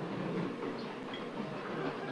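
Steady room noise of a large hall picked up through an open microphone, with a faint murmur of distant voices.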